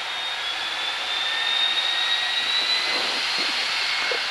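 L-39 Albatros jet trainer's Ivchenko AI-25TL turbofan heard from inside the closed cockpit while taxiing: a steady rushing noise with a thin high whine that rises slowly in pitch.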